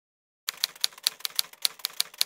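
Silence for about half a second, then a typewriter sound effect: a rapid run of sharp keystroke clicks, several a second, as a caption is typed out letter by letter.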